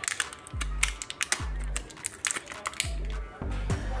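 Crinkling and crackling of a thin plastic bag as a coiled USB charging cable is unwrapped by hand, in a quick run of small sharp clicks. Background music with a regular bass beat plays underneath.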